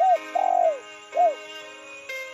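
Three arched bird calls, the middle one the longest, over background music with sustained tones.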